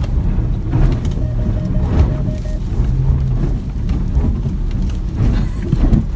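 Jaguar F-Pace cabin noise while driving: a steady low rumble of road and engine, with a short steady tone about a second in.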